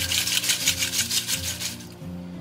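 Roasted dried red chillies rattled and shaken in a perforated aluminium colander, a quick rhythmic rustle of several shakes a second that fades toward the end, sifting the loose seeds out through the holes.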